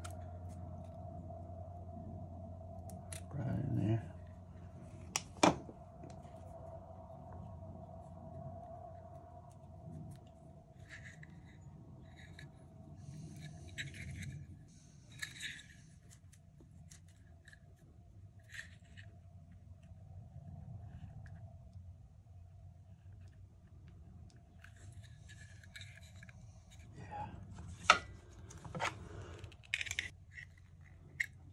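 Scissors snipping through a Zippo lighter's wick in one sharp cut about five seconds in, after a dull knock. This is followed by faint clicks and rustles of the lighter's metal insert being handled as the trimmed wick is worked back in, with a steady low hum underneath.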